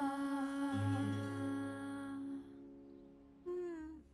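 A voice holds one long final note of a gentle song, with a low accompanying note coming in under it about a second in and fading. Near the end a short falling vocal sound follows.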